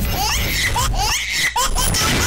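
Laughter sound effects, several short overlapping laughs and giggles, in a TV comedy show's title jingle.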